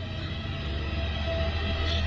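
Horror film score: a low, steady drone with faint held tones, slowly swelling in level.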